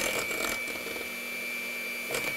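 Electric hand mixer running steadily with a high-pitched whine, its beaters whisking pudding mix and milk in a bowl.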